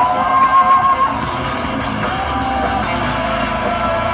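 Live folk-metal band playing through a festival PA, heard from the audience: electric guitars, bass and drums under a melody line, with a long held note in the first second and another held note about two seconds in.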